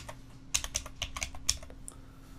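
Computer keyboard typing: a quick run of about ten keystrokes, clustered in the second half.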